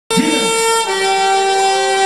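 A held electronic instrument tone that starts suddenly, sits on one note, then steps down to a lower note just under a second in and holds it steady.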